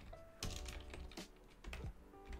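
Typing on a computer keyboard: a faint, irregular run of keystrokes as a word is typed out.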